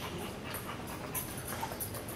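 A dog panting.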